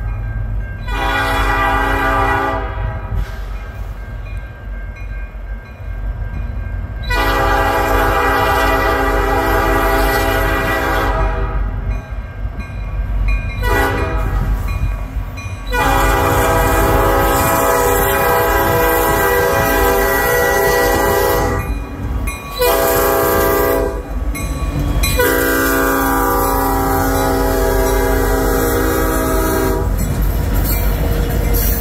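Nathan P5 air horn on a CN SD60 diesel locomotive sounding for a grade crossing as the train approaches: a short blast about a second in, then long blasts, a short one, and a final long one held as the locomotives reach the crossing. Underneath runs the low rumble of the diesel engines.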